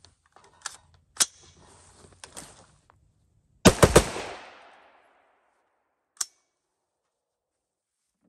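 A few light clicks and knocks, then just before halfway a quick burst of three or four sharp bangs with a tail that fades over about a second, and one more click a little later.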